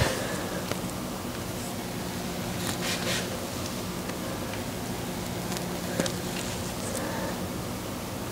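Quiet room tone with a steady low hum, and a few faint rustles and soft taps as a person squats, about a second in, around three seconds and around six seconds.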